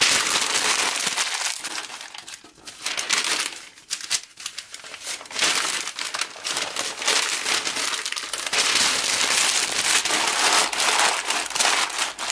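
Sheets of newspaper coupon inserts crumpled into balls by hand and stuffed into a plastic basket: dense paper crackling, with short lulls about two and four seconds in.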